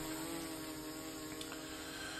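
Autel EVO II Dual 640T V3 quadcopter drone's propellers humming just after lift-off, a steady pitched hum that fades slightly as it climbs away.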